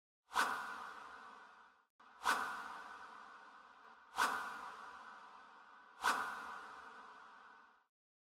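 Four whoosh transition sound effects, each a sudden swipe sound that fades away over about a second and a half, one every two seconds.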